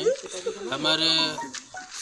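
A man speaking Hindi into close microphones, with one long drawn-out vowel in the middle.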